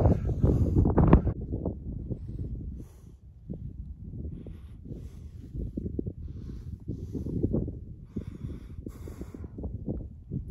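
Gusty wind buffeting the microphone: a low rumble that rises and falls with the gusts.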